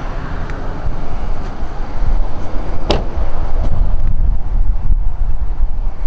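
Wind buffeting the microphone: an uneven low rumble, with one sharp click about three seconds in.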